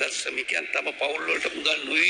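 Speech only: a man reading aloud from a document at a microphone.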